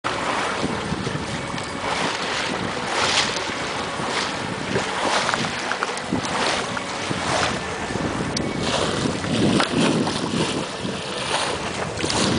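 Wind buffeting the microphone in uneven gusts over the wash of water along the hull of a Farr 6000 trailer yacht sailing under spinnaker.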